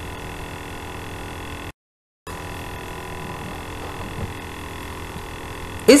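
Steady electrical mains hum with a light hiss, made of several even tones, that drops out to dead silence for about half a second near the two-second mark.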